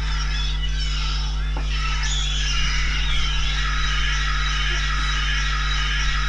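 A loud steady electrical hum from the recording, with faint music underneath it carrying high wavering melodic lines.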